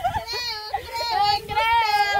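Several young women singing in high voices, overlapping held notes that bend up and down, with no clear words.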